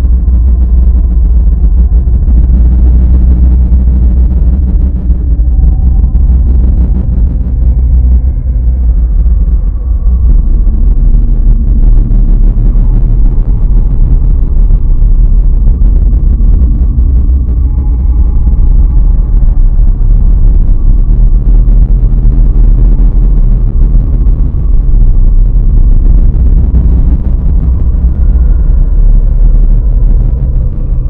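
Dark ambient drone: a loud, dense low rumble that never lets up, with faint sustained higher tones drifting in and out over it.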